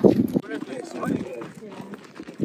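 Indistinct voices talking, with the soft footfalls of camels walking on sand.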